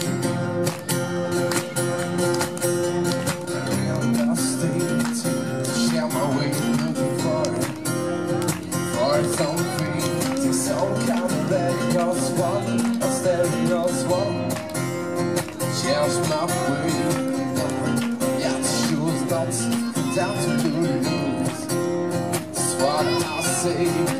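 Two acoustic guitars strummed and picked in a live acoustic song, with a man singing over them from a few seconds in.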